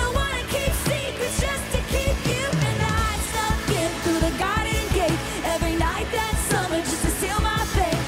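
Live pop song performed in a stadium: a female lead vocal sung into a handheld microphone over a steady drum beat and full band.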